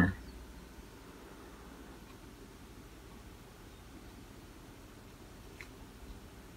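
Quiet room tone with a low, steady background hum, and one faint click near the end.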